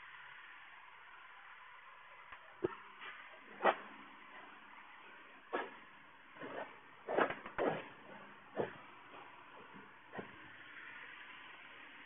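Quiet room with a handful of short, soft sounds from a person moving about: footsteps on a floor mat and a towel being handled.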